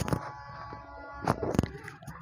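Sliced onions sizzling in hot oil in a kadhai, with a wooden spatula knocking against the pan three times, twice close together near the end.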